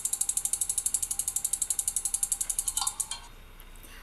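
Rapid, even ticking of an online spinning-wheel name picker, about a dozen ticks a second, stopping about three seconds in as the wheel comes to rest.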